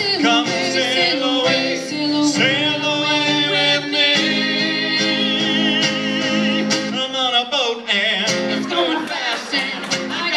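A man and a woman singing together over a strummed acoustic guitar, live. Their voices hold long notes with vibrato, one long note held in the middle sliding down in pitch a few seconds before the end.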